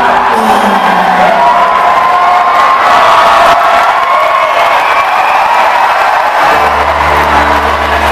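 A live acoustic folk-rock band with banjo and acoustic guitar, the crowd cheering and whooping over the music. About six and a half seconds in, a deep held upright-bass note comes in and carries on.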